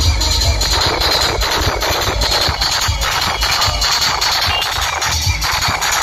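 Loud electronic dance music with a heavy, pulsing bass, played over a large sound system, with a steady high-pitched edge in the top of the sound.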